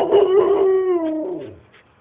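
A dog's single drawn-out howl, a greyhound-style 'roo', held for about a second and then sliding down in pitch as it fades. It is an excited demanding vocalisation, the dog asking for dinner after a walk.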